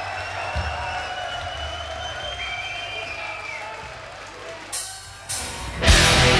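Live death metal band opening a song: sustained held tones over a low rumble. Near the end come a couple of cymbal crashes, and then the full band comes in loud.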